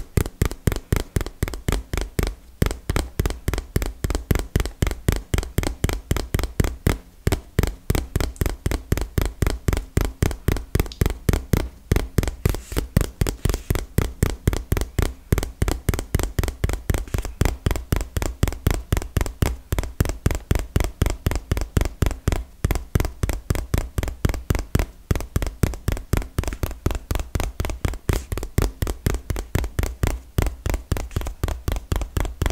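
Fingertips tapping fast on a small cardboard box held right against the microphone: a steady, even run of about four to five crisp taps a second, each with a soft low thump.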